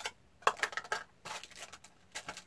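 Pieces of a nesting camping cook set being packed together: a plastic bowl and other parts knocking and scraping against the metal cooking pot in a few short clatters, the sharpest about half a second in.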